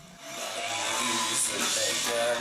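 Live club concert sound fading in about a third of a second in: a steady wash of crowd noise, with the band faintly underneath.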